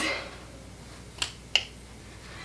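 Two short, sharp clicks about a third of a second apart, over quiet room tone.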